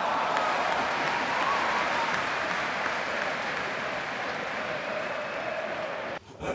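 Crowd applause as a steady, even wash of clapping that fades slightly and then cuts off suddenly at the very end.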